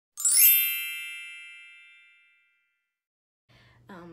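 Chime sound effect: a quick bright shimmer that settles into several ringing high tones, fading out over about two seconds.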